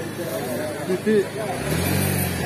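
Background voices of people talking, with a vehicle engine humming steadily from near the end.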